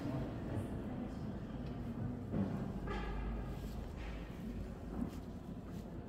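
Echoing interior ambience of a large stone church: a steady background of distant activity, with a low rumble in the middle and a brief pitched sound like a distant voice about three seconds in, plus a few faint clicks.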